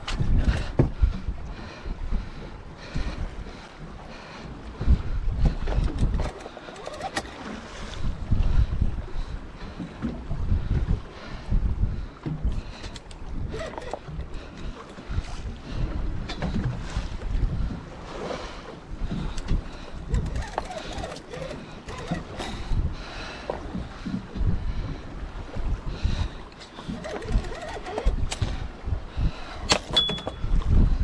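Wind buffeting the microphone in uneven gusts, over the wash of choppy sea against the boat.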